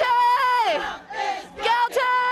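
A woman shouting at a protest: two long, high-pitched shouts, each held and then falling in pitch at the end, with a crowd in the background.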